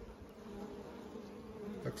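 Honeybees in an opened Langstroth hive, buzzing as one steady hum over the frames. The colony is stirred up, which the beekeeper puts down to something having tried to get into the hive.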